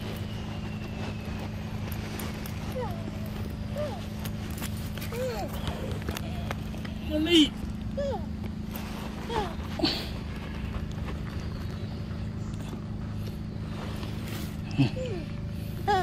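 Scattered brief vocal sounds, short gliding calls or murmurs, the loudest about halfway through, over a steady low hum.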